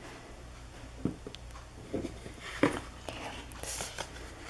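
Faint handling sounds on a tabletop: a few soft taps and knocks as small rubber erasers and a cardboard-and-plastic blister card are moved, with a brief rustle of the card near the end.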